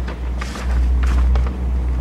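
Electric paper shredder running with a steady motor hum as pages of a handbook are fed in and cut, with short bursts of louder grinding noise about half a second and a second and a quarter in.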